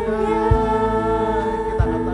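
Voices singing a worship song together, holding long, steady notes, with two short low thumps under the singing, about half a second in and near the end.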